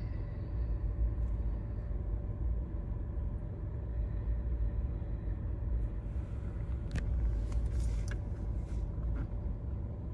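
Steady low rumble of a car's engine and road noise heard from inside the cabin while the car creeps along in slow traffic, with a faint steady hum over it. A single faint click comes about seven seconds in.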